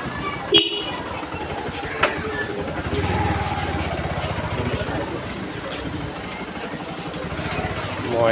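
Motorcycle engine running at low speed in a low gear, heard from the rider's seat, swelling briefly about three seconds in. A sharp click comes just after half a second in, and another about two seconds in.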